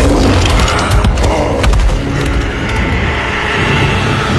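Loud film battle sound effects: a heavy low rumble under rapid clattering and knocking, busiest in the first couple of seconds, then settling into a steadier roar.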